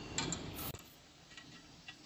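Light metallic clicks and ticks of a wrench working a screw on a cartoner's metal guide-strip bracket while it is loosened to lower the guide strip, a cluster of clicks in the first second, then a few fainter ticks.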